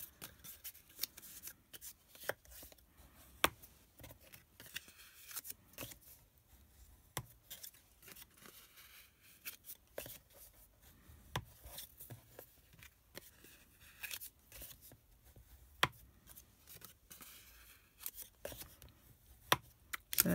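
Cardstock panels being folded along score lines and burnished with a bone folder, with soft rubbing and scraping of the folder over the paper. Scattered light taps and clicks come as the panels are pressed and set down on the craft mat.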